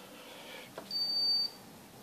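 Insulation resistance tester's beeper giving one steady high-pitched beep of about half a second, about a second in, with a faint click just before it.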